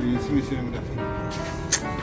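Background music with long held notes, and a short sharp click near the end.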